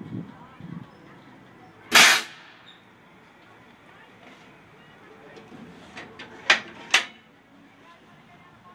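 Compressed-air apple cannon firing once about two seconds in: a sudden sharp blast of released air that dies away quickly. A few lighter sharp clicks follow later, with two louder ones close together near the end.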